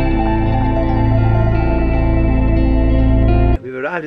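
Background music with sustained, layered tones over a steady bass, cutting off suddenly near the end.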